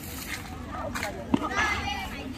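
Players and onlookers shouting and calling out during a kho-kho game, with a sharp smack about two-thirds of the way through.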